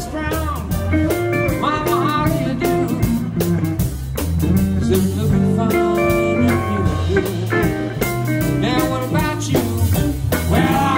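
Live blues band playing: electric guitars over bass and drum kit, with a lead line of bent notes.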